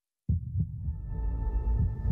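After a brief dead silence, a cinematic soundtrack starts abruptly. Deep, heartbeat-like thuds come in pairs, with a sustained high tone fading in over them.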